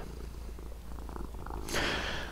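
Domestic cat purring steadily, a fast even pulsing, with a brief hiss near the end.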